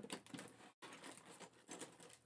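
Faint scattered clicks and rustling of a clear plastic container of seashells being handled.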